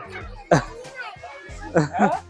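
Children playing and calling out, with two loud high shouts, one about half a second in and one near the end, over background music.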